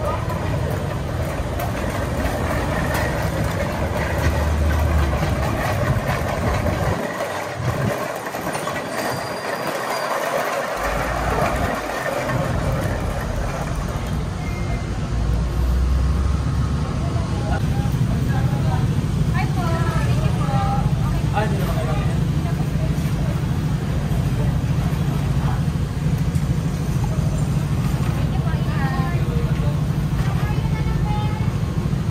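Steady outdoor traffic noise with a vehicle engine running, its low hum growing stronger about halfway through, and faint voices over it.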